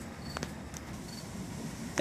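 Quiet background hiss with a couple of faint light clicks: handling noise as the camera is moved.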